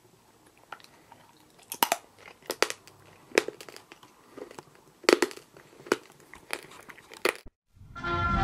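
Crunching bites and chewing on a Popeye candy stick, a hard chalky candy cigarette, close to the microphone: a string of sharp crunches at irregular intervals that stops shortly before the end.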